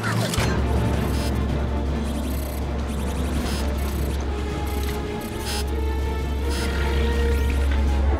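Film soundtrack: music with a loud, steady deep bass drone, with several short bright mechanical clicks laid over it.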